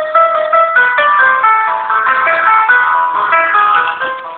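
Telephone hold music: a melody of short stepped notes, thin and band-limited as heard down a phone line, playing while the call waits in the queue to be answered.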